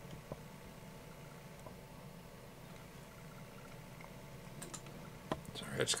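A few faint, separate computer mouse clicks over a steady low hum.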